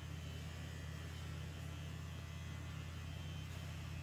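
Handheld vibration device pressed against the patient's chin, giving a steady low hum; the vibration is used to dull the pain of the lip-filler needle.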